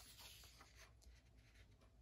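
Near silence, with a faint rustle of hands handling the paper pages of a book.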